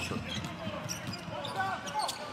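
Basketball being dribbled on a hardwood court, short bounces in an arena, with a faint voice underneath near the end.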